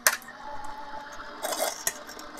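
Gemini Junior electric die-cutting machine finishing a pass: a sharp click at the start, then its motor humming faintly as the cutting plates feed out. Near the end, the plastic cutting plate scrapes as it is pulled free, with a second click.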